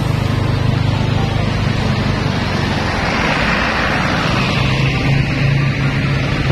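Motorbike engine running steadily with road and wind noise while riding through town traffic, a wash of noise swelling briefly about halfway through, under background music.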